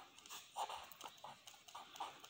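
Faint strokes of a marker pen on paper as a word is handwritten, a few short scratches a second.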